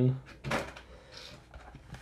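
A drawn-out spoken word trails off, then comes a single short knock about half a second in as the cardboard Pokémon pin collection box is handled. Faint handling noise follows.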